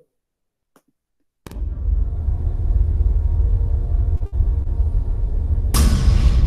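Opening music of a short film playing over the logo title card: silence for about a second and a half, then a deep steady rumble with faint held tones, and a sudden loud hit with a hissing tail near the end.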